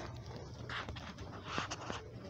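Footsteps on a hard, polished hospital corridor floor, a few soft scuffs and light clicks in the second half, over a steady low hum.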